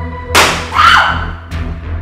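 Film soundtrack music: a held organ chord breaks off about a third of a second in for a sudden loud crash that fades over about half a second. A lighter hit follows about halfway through, over a steady low pulsing beat.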